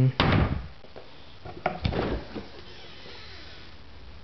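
Refrigerator door being pulled open and handled: a sharp knock just after the start and a cluster of knocks and rattles about two seconds in, then quieter.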